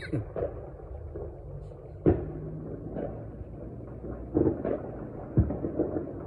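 Scattered bangs of New Year's Eve celebration around the neighbourhood: a sharp bang about two seconds in, the loudest, then several more pops and thuds over a low steady rumble.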